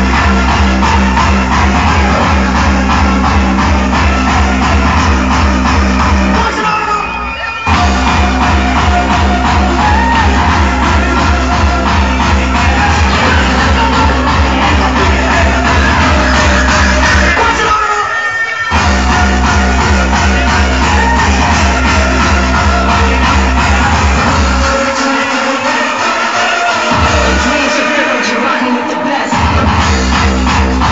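Loud hardstyle dance track played over a festival sound system, with a heavy, steady kick-drum beat. The music cuts out briefly about 7 and 18 seconds in, and near the end the bass drops away twice before the beat returns.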